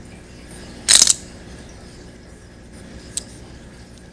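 Ruger 10/22 trigger sub-assembly with its new aluminium trigger being slid into the trigger housing: one brief sharp clack of the parts about a second in, then a faint small click near three seconds.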